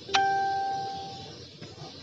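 A single bell-like chime: one sharp strike that rings out with a clear tone and fades away over about a second.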